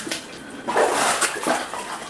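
Rubber boots splashing and sloshing through shallow water on a rocky mine-tunnel floor: a short click, then a loud splash about a second in and a smaller one just after.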